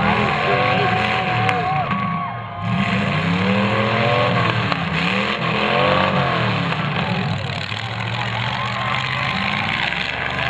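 Several demolition derby cars' engines revving loudly at once, their pitch repeatedly climbing and dropping back as the cars accelerate and back off.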